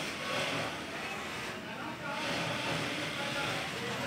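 Juki industrial sewing machine's motor humming steadily, with indistinct voices in the background.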